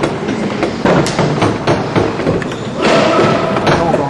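Indoor tennis arena background noise: a steady murmur with scattered thuds and knocks, and a short pitched sound about three seconds in.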